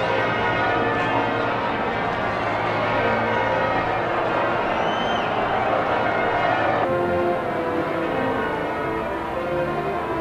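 Church bells pealing in change ringing, many overlapping bell tones ringing on steadily. About seven seconds in the sound shifts abruptly at an edit in the recording.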